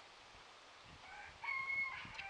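A rooster crowing once, starting about a second in, the call held on a steady pitch.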